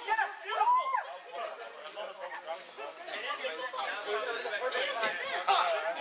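Overlapping chatter of several people talking and calling out at once, with a louder call about half a second in.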